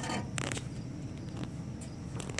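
Handling noise from a phone being moved around while filming: a brief scraping rustle about half a second in, over a low steady rumble.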